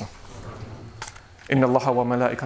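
A brief pause with only room tone, then a man's voice starts speaking about one and a half seconds in.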